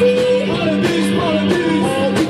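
Live rock band playing loud: electric guitar and keyboard over a steady beat, with singing.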